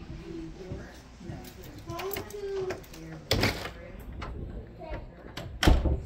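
Indistinct background voices with two sharp knocks, one a little past the middle and a louder one near the end.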